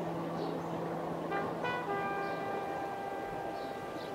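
Street-ambience intro of a hip-hop track: a steady traffic-like hiss with a low hum that fades out, then short horn blips about a second in and a held horn tone from about two seconds in.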